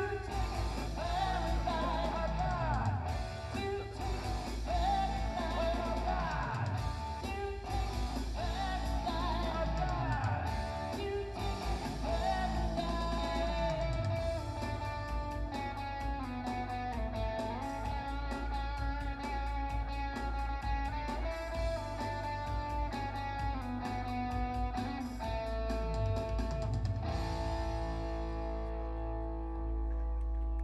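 Live band playing a rock song: sung vocals over electric bass, electric guitar and keyboard. The singing is strongest in the first half; near the end the song thins out to held notes.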